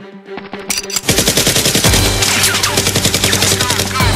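Rapid automatic gunfire sound effect over background music, starting about a second in and running densely, with a few falling whistle-like tones near the end.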